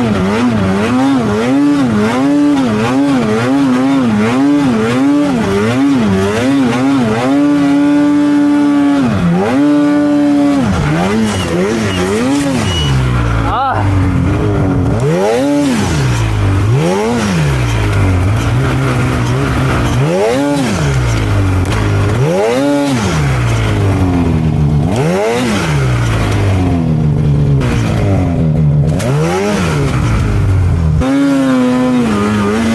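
Two-stroke engine of a Polaris 9R snowmobile, throttle blipped quickly on and off, about twice a second, for the first ten seconds or so while picking through trees in deep powder. It then revs lower, in long rises and falls a second or two apart, as the sled digs and leans in the deep snow.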